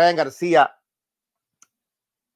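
A man's voice speaking briefly, a word or two, at the start.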